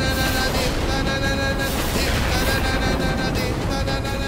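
Dramatic background score: sustained high tones held over a dense, steady low rumble.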